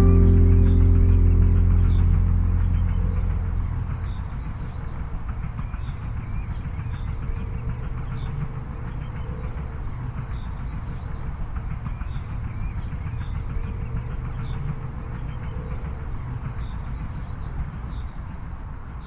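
The last chord of a cueca song, played on acoustic guitars, rings out and fades over the first few seconds. A steady low background rumble follows, with faint high chirps about once a second.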